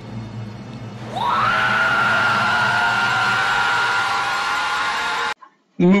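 A woman's long, high scream from a horror film soundtrack. It rises sharply at the start, holds one pitch for about four seconds, and cuts off abruptly. Before and under it there is a low, dark music drone.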